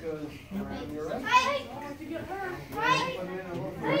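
Children shouting short, high-pitched 'hey!' kiai several times as they strike while sparring.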